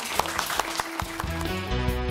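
Audience applause with instrumental closing music coming in over it. The music's bass enters about a second in, and the music then carries on alone at a steady level.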